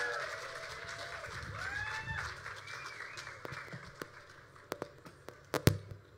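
Small audience applauding and cheering, with a couple of rising whoops; it fades out over the first few seconds. Then a few sharp clicks and knocks follow, the loudest a thump near the end.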